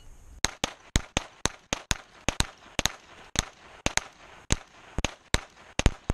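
Gunshots from a bowling pin shooting match: about twenty shots in quick, uneven succession, starting about half a second in.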